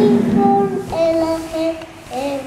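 A young girl's voice chanting the alphabet in a sing-song way, in two drawn-out phrases of held notes.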